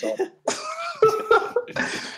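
A person coughing, a run of sharp coughs starting about half a second in.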